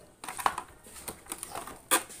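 Cracked plastic housing of an electric car side mirror clicking and knocking as it is handled and lifted, a few light knocks followed by a sharper one near the end.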